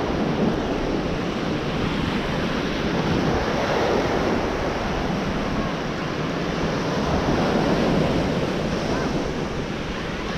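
Small waves breaking and washing up a sandy beach in a steady rush, with wind buffeting the microphone in a low rumble.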